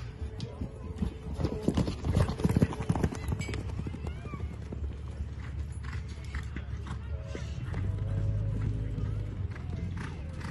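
A horse galloping on arena dirt, a fast run of hoofbeats loudest from about one to three and a half seconds in, then fainter hoofbeats as it runs farther off.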